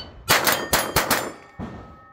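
A rimfire rifle fires a rapid string of shots at steel plates over about a second, and each hit rings out from the steel, in a timed Steel Challenge run.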